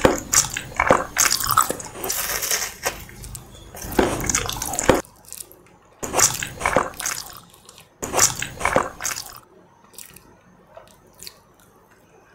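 Close-miked biting and chewing of a glazed orange-shaped cake, in several bouts of a second or two each. It drops to faint small mouth clicks for the last two seconds or so.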